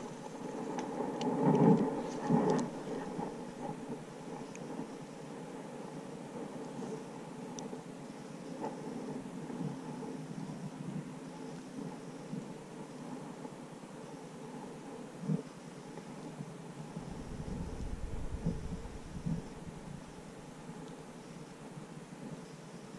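Quiet outdoor background with a faint steady hiss. A few knocks and rustles of handling come in the first three seconds, and a low rumble runs from about 17 to 20 seconds in.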